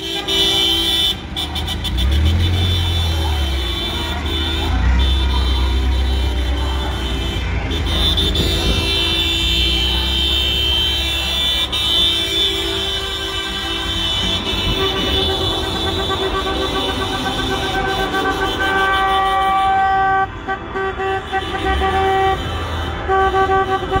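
Car horns of a slow-moving motorcade honking over engine noise, several sustained blasts overlapping. A low rumble under the first half, and from about two-thirds of the way in, horns beeping in short repeated toots.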